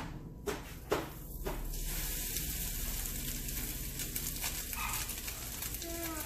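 Breaded chicken tenders frying in hot oil in a pan: after a couple of light knocks, a steady sizzle with fine crackling starts about a second and a half in.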